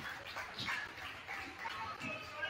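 Faint sounds of basketball play on a hardwood gym floor: short, high sneaker squeaks as players cut and stop.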